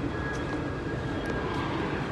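A steady engine rumble with a faint, steady high whine over it.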